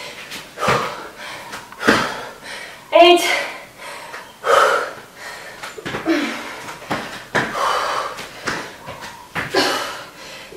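A woman breathing hard during high-intensity exercise: sharp, noisy exhales about once a second, with a short voiced grunt about three seconds in.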